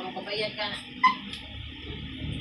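A dog giving one short, sharp whimper about a second in.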